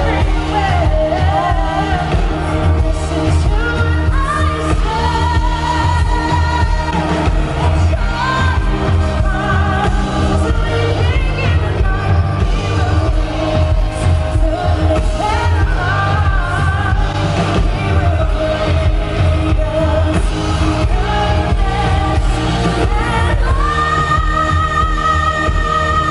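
A woman singing a song into a microphone over a live band accompaniment with heavy bass, amplified through the hall's sound system.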